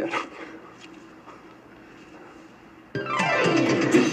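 Quiet room tone, then music cuts in suddenly about three seconds in, opening with a falling sweep of notes.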